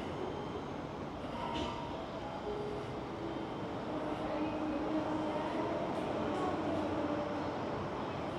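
Steady urban background noise: a continuous low rumble and hiss with no distinct events.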